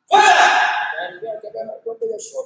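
A kihap, the loud martial-arts shout of taekwondo students, bursts out at the very start and tails off over about a second, followed by quieter voices.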